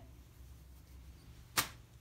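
A single short swish of cloth being moved, about one and a half seconds in, against faint room tone.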